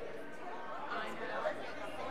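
Many people talking at once in a large room: overlapping chatter of a congregation greeting one another, with no single voice standing out.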